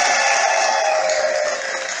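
Congregation ululating and cheering in response to a call to praise God, with high sustained trilling voices over a hiss of clapping. It starts suddenly just before and eases slightly in the second half.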